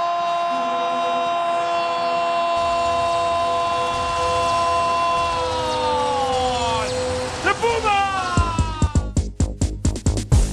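A football commentator's long drawn-out goal cry, one note held for several seconds that falls away about seven seconds in. Near the end, music with a heavy pounding beat cuts in.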